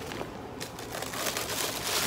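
Plastic packaging crinkling and rustling as it is handled, in many small crackles, growing denser and louder near the end.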